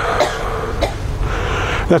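Short coughing over a steady background hum of room noise.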